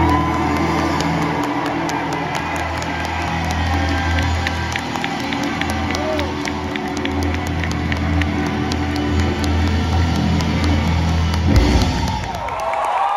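Live band holding the closing note of a song, a steady low bass tone under the mix, with the audience cheering over it; the music stops abruptly near the end.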